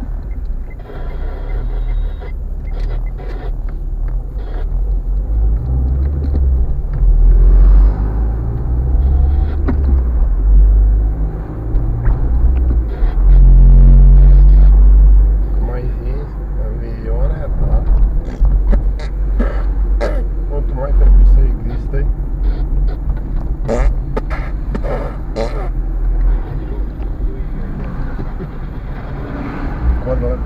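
Interior sound of a car being driven: a steady low rumble of engine and road, swelling louder about halfway through.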